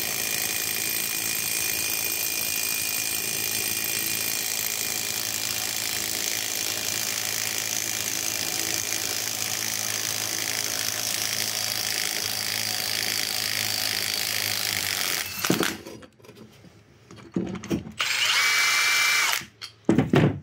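Cordless impact wrench running continuously on the forcing screw of a ball joint puller, pressing a rust-seized ball joint out of a Subaru steering knuckle. It stops abruptly about fifteen seconds in, and a brief loud burst of sound follows near the end.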